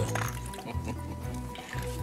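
Background music with a low, steady bass drone.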